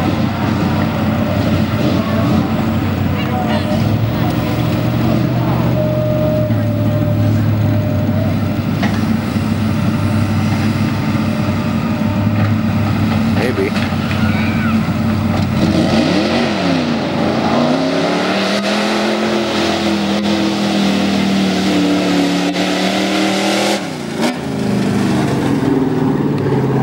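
Early Ford Bronco mud-bog truck's engine pulling steadily under load through mud, then revving up and down in repeated swells for the last third, with a brief drop shortly before the end.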